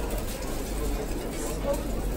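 Background chatter of diners in a buffet restaurant: faint, overlapping voices over a steady low hum.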